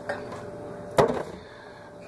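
A single sharp knock about a second in: a plastic jug of milk set down on a counter, over faint room noise.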